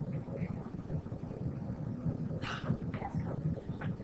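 Faint, muffled voices off the microphone, with a low uneven rumble of room noise underneath.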